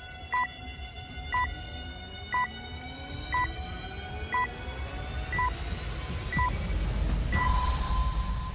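Electronic countdown sound: a short beep once a second over synthesized tones that slowly climb in pitch. Near the end the beeps give way to one long held tone and a low swell that grows louder.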